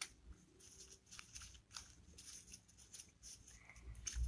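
Near silence with a low hum and a few faint, scattered clicks and rustles of paper cards being handled.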